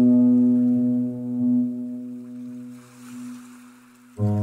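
Slow, soft piano music: a held low chord fades away over a few seconds and is almost gone by the end.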